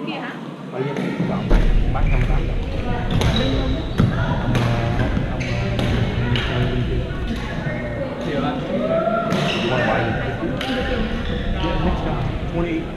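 People talking in a large sports hall, with short sharp knocks scattered through that are badminton rackets striking shuttlecocks. A low rumble comes in about a second in.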